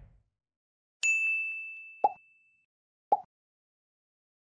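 End-screen sound effects: a bright bell-like ding about a second in that rings and fades over a second or so, followed by two short pops about a second apart.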